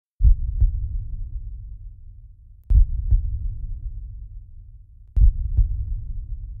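A deep heartbeat-style thump in pairs, like lub-dub, heard three times about two and a half seconds apart. Each pair fades away slowly before the next.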